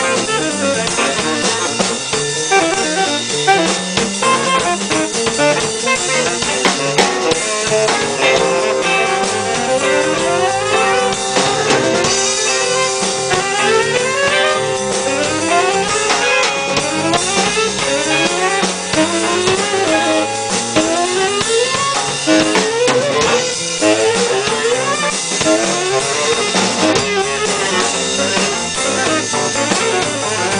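Free jazz played by a band: tenor saxophone improvising over a drum kit. Through the middle stretch the band plays repeated quick rising runs of notes.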